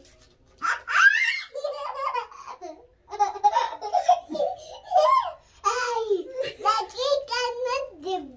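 A young child laughing and vocalising together with a woman's voice, in bursts of giggling and excited sounds.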